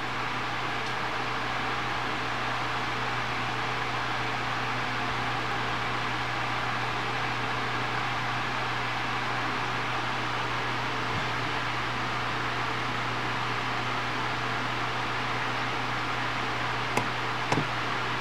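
Steady low hum and hiss of background noise. Two small clicks near the end, from the barometer's push buttons being pressed.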